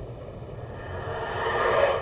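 Rushing engine noise that swells steadily over the second half, as of a motor approaching, heard through the hall's playback speakers.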